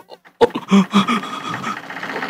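A sharp knock about half a second in, then a motor vehicle engine comes in and keeps running steadily, with a few short voice sounds over it.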